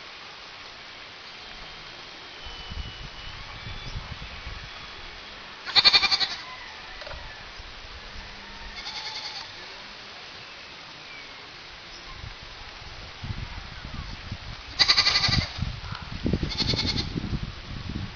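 Four short animal calls, each about half a second long, over a steady background hiss. The two loudest come about six seconds in and near the end, with a fainter call after each.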